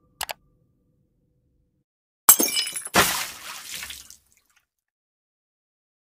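End-screen sound effects: two quick clicks, then a sudden crash about two seconds in and a second crash-like burst that fades out about four seconds in.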